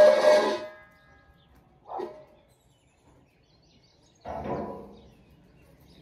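A dog's bowl being thrown about: a ringing clatter that dies away over the first second or so, then two shorter, fainter sounds about two and four seconds in.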